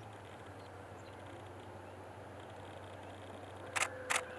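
Quiet outdoor background with a steady low hum, and a sharp click near the end.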